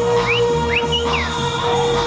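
Loud early-1990s rave dance music on a club sound system, with a pulsing bass and held synth tones. Four short, high whistle-like glides, rising and falling, come in quick succession in the first second and a half.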